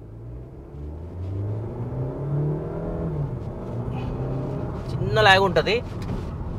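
Mahindra Scorpio-N's 2.0-litre turbo-petrol four-cylinder engine accelerating hard, heard from inside the cabin. The engine note rises for about two and a half seconds, falls back around three seconds in, then pulls on steadily. A man's voice is heard briefly near the end.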